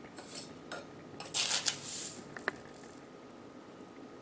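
Metal spoon scooping sand from a jar and tipping it into a small glass globe: short hissing scrapes of sand, the loudest about a second and a half in, and a single sharp clink of the spoon against glass about halfway through.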